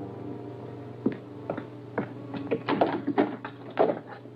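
A door being opened and someone coming in: a run of short, sharp knocks and clicks, irregularly spaced, starting about a second in and coming thicker in the second half, over a low steady hum.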